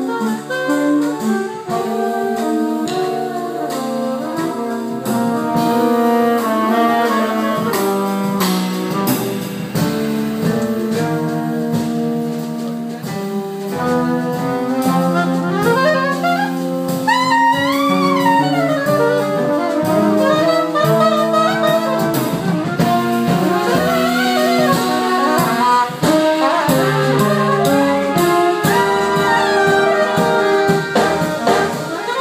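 Jazz big band playing: saxophone and brass section chords over piano, double bass, guitar and drum kit. Around the middle a lead line bends up and down in pitch above the ensemble.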